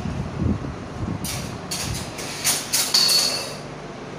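Metal clinks on a stainless steel saucepan of boiling milk tea: a low rumble of handling, then several sharp clinks in the second half, the one about three seconds in ringing briefly.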